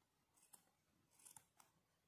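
Faint snips of scissors cutting through white yarn, trimming a pom-pom: three or four short cuts, two of them close together about a second in.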